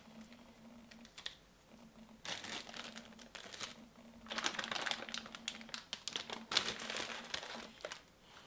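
Plastic zip-top bag crinkling as it is handled, in three spells of rustling, over a faint steady hum.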